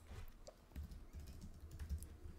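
Faint typing on a computer keyboard: a run of light key taps as a search term is entered.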